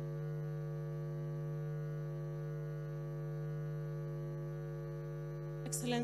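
Steady electrical mains hum in the live audio feed: one low, unchanging buzzing tone with a row of higher overtones. A brief faint sound comes in near the end.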